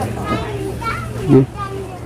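Indistinct background voices of people talking, with one short, louder voice sound a little past the middle.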